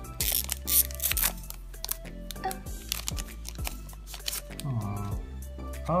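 Foil booster-pack wrapper torn open and crinkled, with sharp crackles in the first second or so, as the cards are drawn out, over steady background music.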